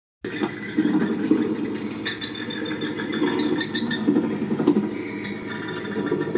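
Battery-powered Halloween haunted-house toy playing its spooky sound effects through a small speaker, with some high squeaky tones about two to four seconds in.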